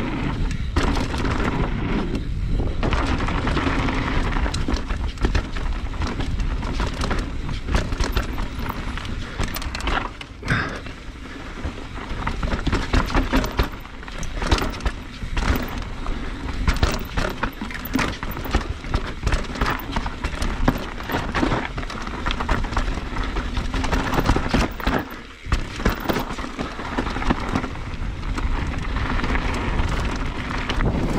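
Polygon Siskiu N9 full-suspension mountain bike descending a trail, at first over wooden bridge planks and then on dirt and gravel: a steady rush of tyres rolling on loose ground, broken by frequent knocks and rattles as the bike hits bumps and rocks.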